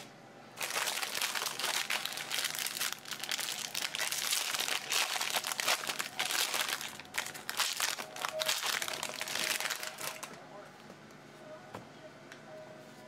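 Foil wrapper of a baseball card pack being opened and crinkled by hand, a dense crackling rustle that starts about half a second in and stops about ten seconds in.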